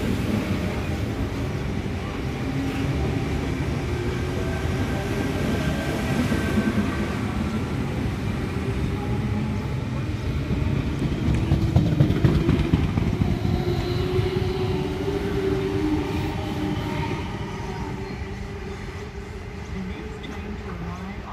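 Sydney Trains Tangara electric passenger train running past on the adjacent track: a steady rumble of wheels on rail that grows to its loudest about halfway through, then fades as the train pulls away.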